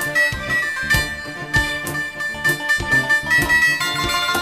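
Synthesizer music without singing: a traditional Greek Asia Minor (Smyrna-style) song played on keyboards, a melody over chords with a steady electronic drum beat.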